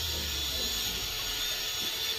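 A steady background hiss with no distinct events: no sawing strokes or knocks stand out.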